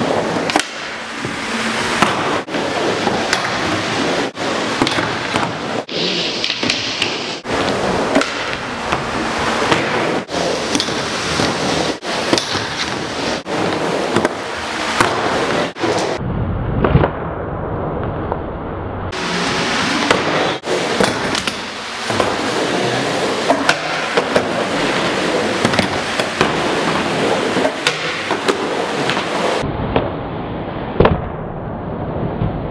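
Skateboard wheels rolling around an indoor bowl ramp: a continuous rolling rumble broken by frequent sharp clacks and knocks from the boards and trucks. Midway, for about three seconds, the rumble turns duller and deeper.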